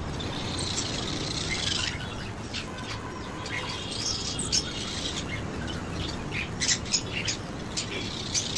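High-pitched chirps and twittering calls from small animals: a dense run in the first two seconds, a few held whistled notes about four seconds in, and short sharp chirps near the end.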